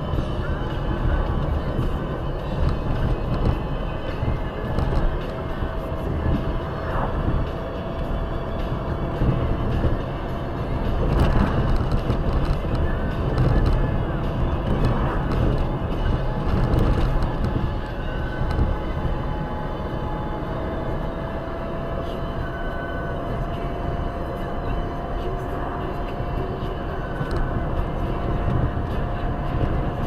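Car driving at about 55–70 km/h, heard from inside the cabin: steady road and engine rumble, with a faint thin whine that rises slowly in pitch as the car gathers speed.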